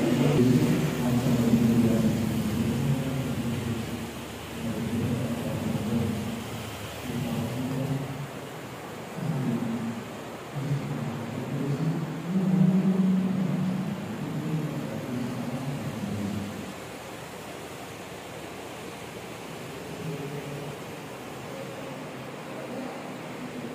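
Muffled, low-pitched chanting with long held notes, dying away about sixteen seconds in and leaving a steady hiss.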